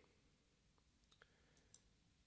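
Near silence: room tone with a few faint computer mouse clicks.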